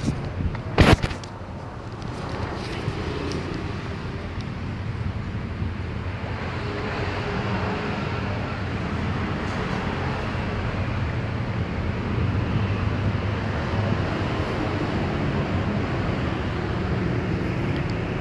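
A steady, low motor hum that grows slowly louder, with a single sharp knock about a second in.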